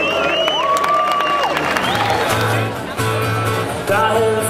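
Live band music over crowd noise, with high gliding tones in the first half; a low bass note starts repeating about halfway through.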